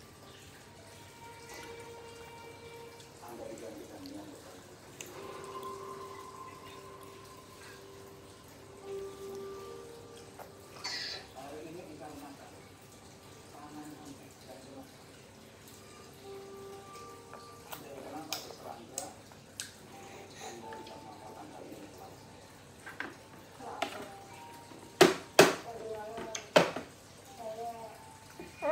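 A plastic baby plate knocking against a plastic high-chair tray: scattered light clicks, then three sharp clacks near the end as the plate is pulled up off the tray. Faint background music plays underneath.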